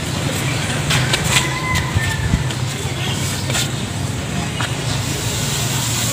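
Steady low hum of a motor vehicle engine running nearby, with a few light knocks and clicks scattered over it.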